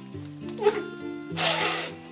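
Background music with held notes, over which a man cries out in an exaggerated sob, briefly just after half a second and loudest near the end.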